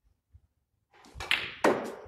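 Snooker cue striking the cue ball: a couple of sharp clicks about a second in, the second the loudest.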